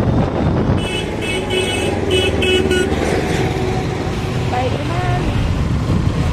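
Road and wind noise from riding a two-wheeler through traffic. About a second in, a rapid string of short high beeps lasts about two seconds, with a vehicle horn sounding under it.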